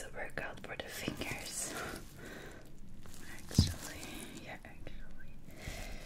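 Nitrile-gloved fingers squeezing and rubbing a silicone pimple-popping practice pad: a soft, irregular hissy rustle, with one sharp click about three and a half seconds in.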